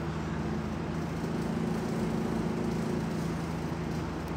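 Steady low motor or engine hum with a few held tones, running evenly throughout.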